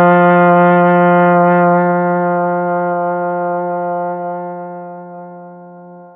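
Trombone playing one long tone on middle F in first position, held at a steady pitch and gradually growing softer over the last few seconds.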